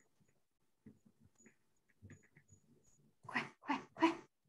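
A dog barking three times in quick succession near the end. Before that, only faint scattered ticks and taps.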